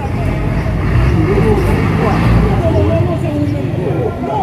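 A heavy vehicle's engine running close by, a low sound that swells just after the start and eases off about three seconds in, with people talking in the background.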